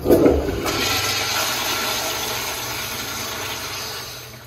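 American Standard Afwall toilet flushing through its commercial flushometer valve. It opens with a sudden loud burst of water, then runs as a steady rush of water swirling through the bowl that slowly tapers off.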